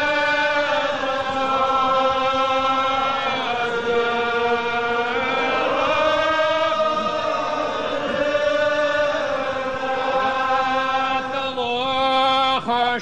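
Unaccompanied congregation singing a Gaelic psalm in long, slow, drawn-out notes that slide from one pitch to the next, heard from an old cassette recording.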